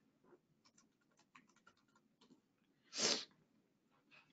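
Faint, quick clicks of a computer keyboard as a short password is typed into a form field. About three seconds in comes a short, louder burst of hiss.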